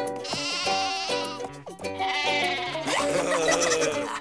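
Cartoon background music with a sheep bleating over it in a wavering, quavering voice.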